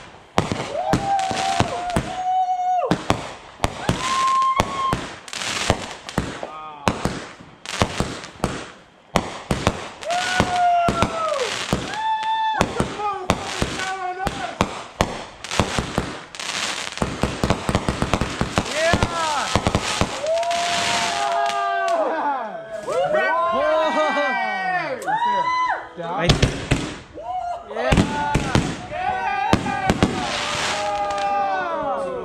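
Aerial fireworks going off in a dense, continuous run of bangs and crackling bursts. Many whistles sound over them, some held steady and some arching up and down, thickest in the last third.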